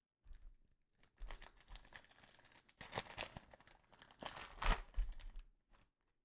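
A foil trading-card pack being torn open by hand and its crinkly foil wrapper peeled off the cards, in irregular rustling bursts, loudest about halfway through and again near the end.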